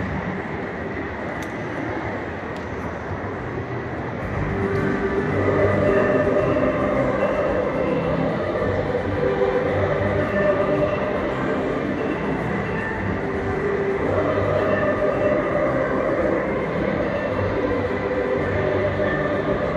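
A large choir singing long held notes over the murmur of a big crowd, echoing in a cavernous shopping-centre atrium; the singing swells louder about four seconds in.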